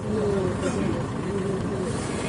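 People talking in Telugu.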